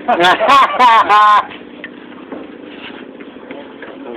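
A person laughing loudly in about four quick bursts during the first second and a half, then only a low background murmur.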